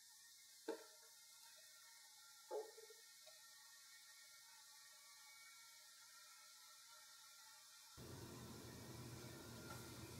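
Near silence, broken by two faint knocks about a second and two and a half seconds in: a handheld sound level meter being set down and adjusted on a desk. A faint hiss comes up near the end.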